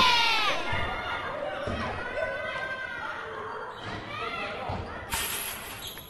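A basketball bouncing a few times on a hard floor, under children's excited shouts and cheering.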